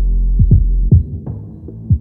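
Hip hop beat with no vocals: repeated deep kick drums that drop in pitch, over a sustained sub-bass that fades out about halfway through and comes back at the very end.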